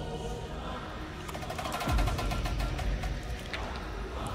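Film trailer sound design over a low, dark rumble: a fast run of clicks from about a second in, and a low boom about two seconds in, the loudest moment.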